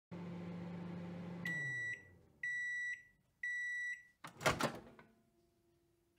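Microwave oven running with a steady hum that winds down, then three beeps about a second apart as the timer ends the cooking cycle, followed by a clunk and clicks of the door latch opening.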